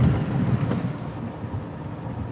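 Low rumbling noise inside a car, strongest at the start and easing off slightly.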